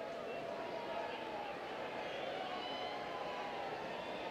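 Steady murmur of a baseball stadium crowd, with faint voices blended into an even hum.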